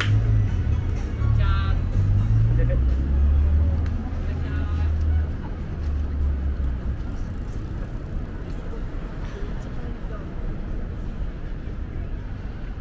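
City street noise with the low engine rumble of a road vehicle, loudest in the first half and fading after about seven seconds. Passers-by's voices and some music sound underneath.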